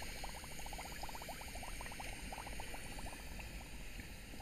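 Limelight rig running its hydrogen-and-oxygen flame on the lime: a faint steady hiss under a quick, even run of small pops, about a dozen a second.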